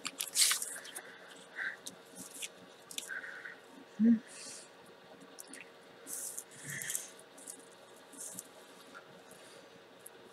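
Paper and cardstock rustling and sliding under the hands as layered card panels are pressed down and shifted into position, in short scattered scrapes. A single short low thump about four seconds in is the loudest sound.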